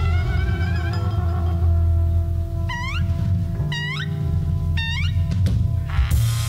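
A jazz group's ending: a horn note held with vibrato dies away, then a trumpet plays three short rising high-register bent notes about a second apart over a sustained low chord, with one sharp hit near the end.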